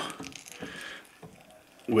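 Faint gear noise of a hand-cranked LEM vertical sausage stuffer pushing meat through the horn into the casing, dying away to near quiet about a second in.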